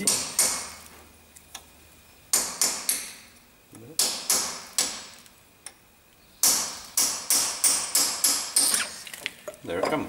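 Socket ratchet clicking in short bursts of quick clicks, with pauses between them, as it winds out the stub axle retaining bolts on a front swivel hub.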